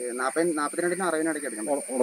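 A man talking, over a steady high-pitched hiss.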